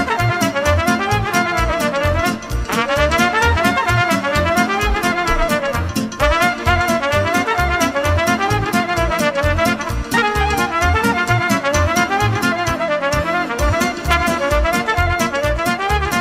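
Trumpet playing a fast, ornamented Moldovan folk dance tune over a backing band with a quick, steady beat.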